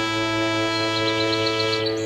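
Instrumental song introduction: a held chord, with a quick run of about eight short, high notes from about a second in, then a change of chord at the end.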